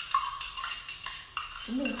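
A spoon stirring small pebbles in a cup of water, the stones and spoon clinking irregularly against the cup.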